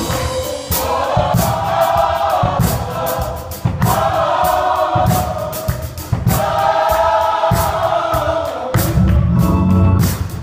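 Live gospel music: voices sing long held phrases together, each a few seconds long, over a drum kit with frequent cymbal and drum hits.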